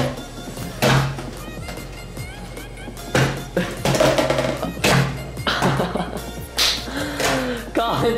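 Background music with a beat, with a few knocks of a small plastic water bottle and plastic cup hitting a wooden table.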